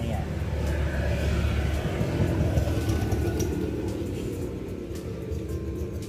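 Low rumble of a passing motor vehicle, strongest in the first two seconds and then fading.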